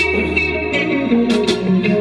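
Live band music: an instrumental passage with electric guitar being played, no singing.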